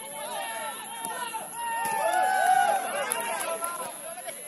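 Several voices shouting and calling out at once on an outdoor football pitch during an attack on goal, swelling louder about two seconds in and easing off near the end.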